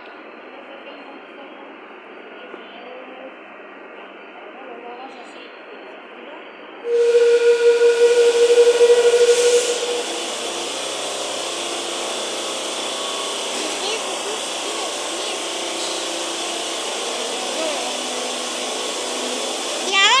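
Madrid Metro series 5500 train standing at the platform with low steady noise. About seven seconds in, a sudden loud hiss with a steady whistling tone lasts about three seconds, then eases to a steady running noise as the train moves off.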